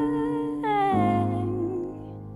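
Music: a wordless hummed vocal note held, then sliding down to a lower note a little over half a second in and held there.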